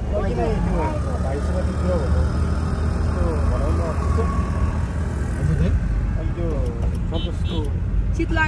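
Steady low road and engine rumble inside a moving car's cabin, with voices talking over it.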